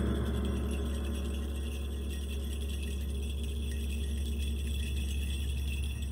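A hand-held suzu bell staff shaken in a steady, continuous jingle, over the fading ring of a large taiko drum struck just before. A steady low hum runs underneath.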